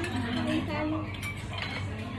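Cutlery and dishes clinking lightly at a dining table, with a brief faint voice near the start and a low steady hum underneath.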